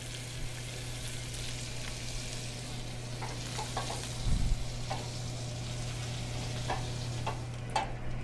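Panko-breaded walleye fillets sizzling in canola oil and butter in a stainless steel skillet. About halfway through there is a short low thump, followed by a few light clicks as a metal spatula works in the pan to turn a fillet.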